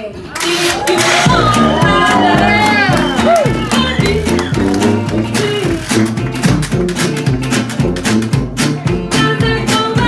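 Live traditional New Orleans jazz band playing an instrumental chorus: a tuba bass line, strummed acoustic and resonator guitars keeping a steady rhythm, and a lead horn line gliding up and down over the top. The band comes in loud just after the start, and the woman's singing voice returns near the end.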